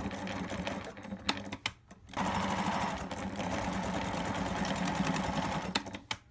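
Sewing machine stitching a double-folded fabric hem: it runs, pauses briefly about two seconds in with a few clicks, then runs steadily and louder for about four seconds before stopping near the end.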